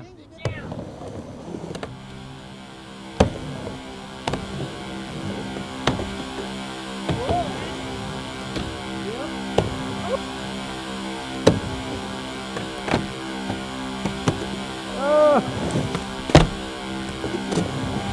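Music with a steady sustained chord plays over a skateboard on a wooden mini ramp: the wheels roll and the board and trucks hit the ramp in several sharp clacks, the loudest at about 3 s and 16 s in. A short call from a voice comes in near the end.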